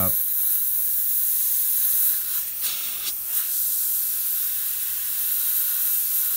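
Gravity-feed airbrush spraying thinned white paint, a steady hiss of air and atomised paint, with a few brief changes in the spray about halfway through.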